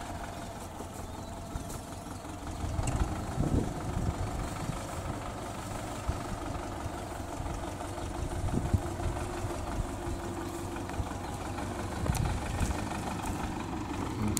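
Diesel engine of a front-loader tractor running steadily some way off as it drives slowly, a low hum with uneven swells.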